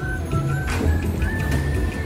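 Background music: a steady repeating bass pattern under a high, held melody line.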